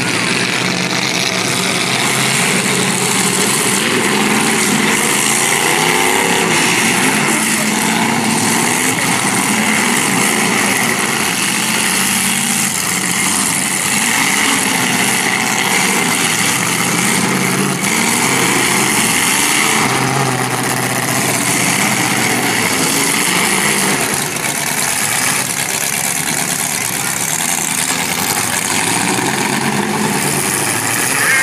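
Several demolition derby car engines running at once, revving up and down as the cars push and ram one another.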